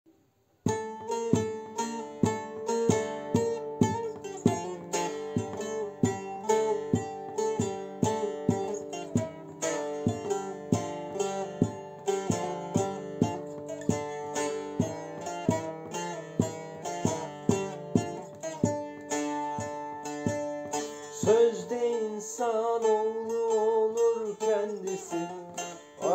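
Bağlama (saz), the long-necked Turkish lute, played solo as an instrumental introduction. Quick, rhythmic picked and strummed notes start about a second in.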